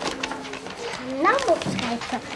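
A voice saying "ja" with a rising then falling pitch, over faint crackling of wrapping paper being handled as a wrapped present is opened.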